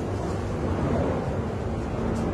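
A steady low rumble of background noise, with a faint voice-like murmur around the middle.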